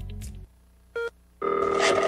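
Background music fades out, a short beep sounds about a second in, then a telephone starts ringing with a steady ring of several held tones.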